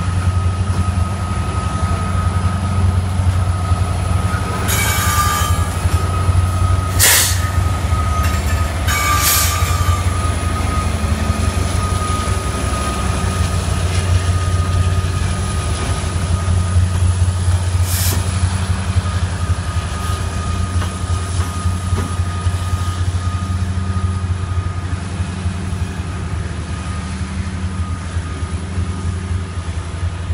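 Union Pacific freight train rolling past at close range: a steady heavy rumble of wheels and cars with a thin, steady wheel squeal, and a few sharp clanks in the first half and one more past the middle as a trailing locomotive goes by.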